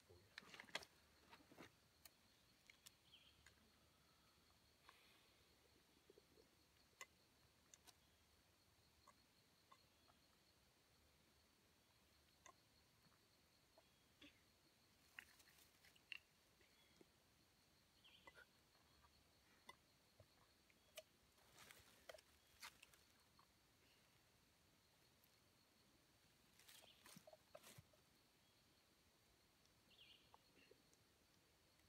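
Near silence, broken by scattered faint clicks and taps from plastic drink bottles being handled, opened and drunk from.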